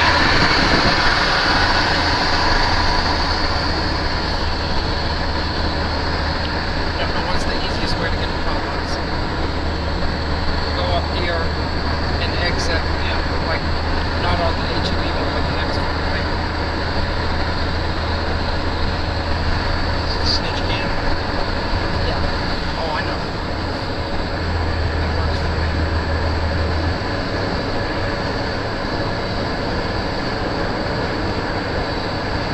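Steady road noise of a car driving along: a rush of tyre and wind noise over a low, even rumble, loudest in the first couple of seconds and then holding level.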